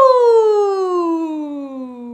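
A single smooth falling tone that glides steadily down in pitch over about three seconds and fades near the end: the descending sound of a plane coming in to land.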